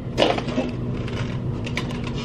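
A short noisy burst just after the start, then a run of quick light clicks and taps that gets busier near the end.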